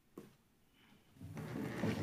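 A light knock, then a chair being dragged out across the floor with a rubbing scrape that grows louder near the end.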